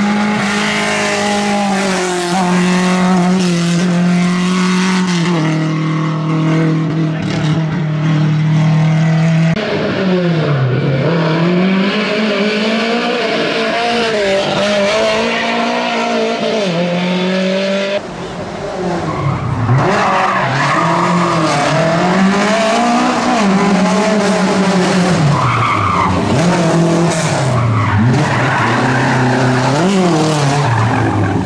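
Rally-prepared Lada 2105's four-cylinder engine driven hard, its pitch holding high, dropping, then rising and falling again and again through gear changes and lifts. In the second half the revs swing up and down repeatedly as the car slides around a tight corner, with tyres squealing.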